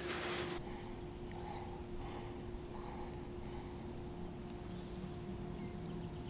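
A brief rush of noise in the first half second, then faint, quiet riverside ambience with a steady low hum.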